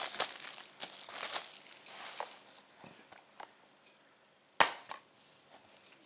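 Plastic shrink-wrap being peeled off a Blu-ray case and crinkled in the hand, fading out over the first two or three seconds. About four and a half seconds in comes a sharp click, the loudest sound, as the plastic case snaps open, with a smaller click just after.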